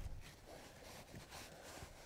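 Very quiet: faint rustling and soft handling noises of hands and a skinning knife working at a black bear's hide, with a brief light hiss of fur about one and a half seconds in.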